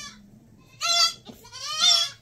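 Goat bleating twice: a short high call about a second in, and a second call that bends upward near the end.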